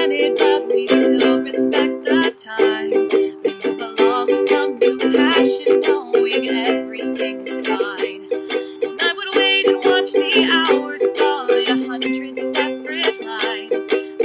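Ukulele strummed in a steady, busy rhythm, changing chords as it goes.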